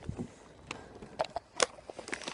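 Handling noise of someone getting into a car: a handful of short, sharp clicks and knocks, the strongest about a second and a half in.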